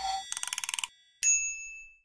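Logo-sting sound effects: a quick half-second run of rapid electronic blips, then a single bright ding about a second in that rings and fades away.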